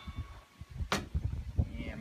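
A small glass bitters bottle being shaken over a glass jar, with low handling rumble and one sharp click about a second in.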